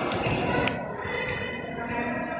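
A tchoukball knocking on a hardwood sports-hall floor three times, about 0.6 s apart, the sound echoing in the large hall, with voices in the background.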